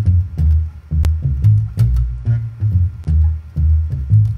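Electric bass guitar playing a deep, low bass line, a funk-style line given a heavier hip-hop feel, with sharp percussive hits keeping a steady beat.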